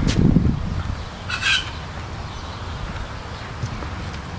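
A short bird call, a fowl-like squawk, about a second and a half in. A low thump comes at the very start, and a low rumble sits under both.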